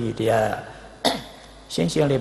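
A man's voice at a microphone, with a sudden harsh clearing of the throat about halfway through; his voice starts again near the end.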